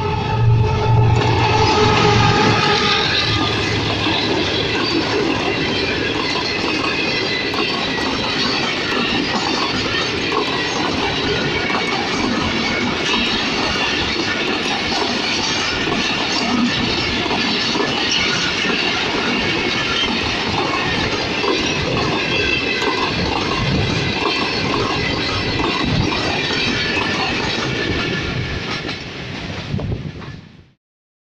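An express passenger train passing close by, its GEU-40 diesel-electric locomotive loudest in the first few seconds. A long run of coaches follows, with steady wheel-on-rail rolling noise and clatter. The noise fades near the end.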